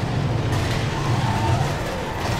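Steady, heavy drone of transport-plane engines from a war drama's soundtrack, a low rumble with no breaks.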